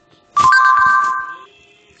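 Short electronic chime from an Android tablet: a chord of a few steady tones that starts sharply, is held about a second, then fades.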